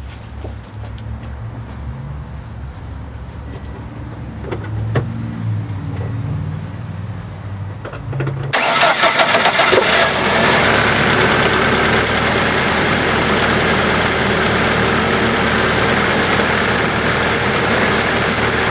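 A 1997 Mercury Mystique's four-cylinder engine starts about eight seconds in, after a low hum and a few clicks. It catches quickly and settles into a steady idle, its injectors firing well after being tapped to free clogs and carbon deposits.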